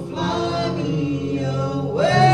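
A woman and a man singing a worship song together into microphones, with musical accompaniment.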